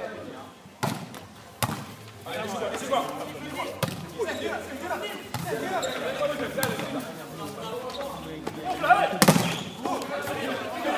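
Volleyball being struck in a rally: sharp slaps about a second in, near two seconds, near four seconds and a loudest one near the end. Many voices call and shout over it from about two seconds in.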